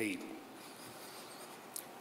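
A pause in speech: the end of a spoken word, then faint room tone through a podium microphone, with one small sharp click near the end.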